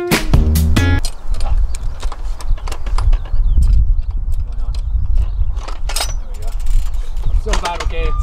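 Background music cuts off about a second in. It gives way to a loud, uneven low rumble of wind buffeting the microphone outdoors, with scattered mechanical clicks and rattles. Voices start near the end.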